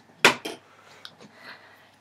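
A sharp plastic clack, then a softer one, as small hard doll accessories are put down on a box and picked up, followed by faint handling.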